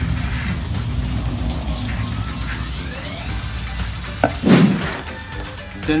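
Background music over the steady hiss of a garden hose spraying water, the hiss fading towards the end; a single low thump comes about four and a half seconds in.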